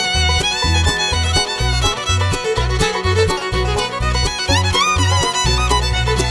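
Instrumental break in an acoustic bluegrass band recording: a fiddle plays the lead melody with sliding notes, over a steady bass line and plucked-string rhythm.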